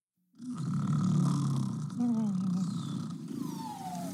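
Cartoon snoring from sleeping animated pigeons, starting abruptly after silence: deep rumbling snores, with a falling whistle on the out-breath near the end.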